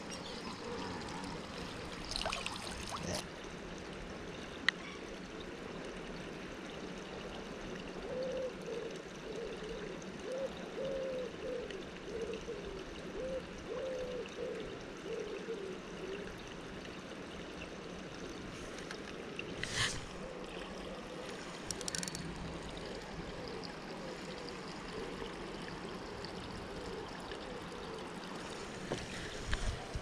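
Steady trickle of running water, with a few short knocks from handling fishing tackle about two seconds in and again about twenty seconds in.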